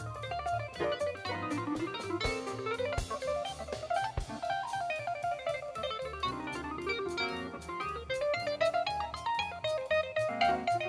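Live jazz band playing: a fast lead solo in quick runs that climb and fall, over bass and drums.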